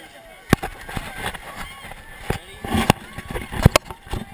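Sharp knocks and rubbing from a hand-held action camera being handled, several times, over distant crowd voices.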